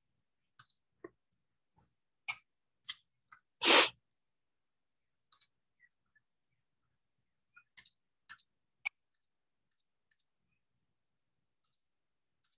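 Scattered short clicks and brief rustles over a video-call microphone, with silence between them and one louder brief burst of noise a little under four seconds in.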